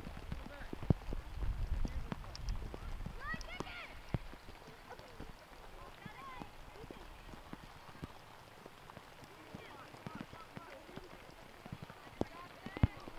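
Open-air youth soccer game sound: faint, unintelligible shouts of children and onlookers, with scattered sharp knocks and one loud knock about a second in. A low rumble fills the first couple of seconds, then the sound grows quieter.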